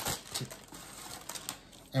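Plastic spinach clamshell crinkling as it is handled, with a few short clicks in the first half second, then quiet.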